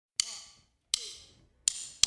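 Three sharp percussive clicks about three-quarters of a second apart, each with a brief ringing tail: a count-in to the start of the song.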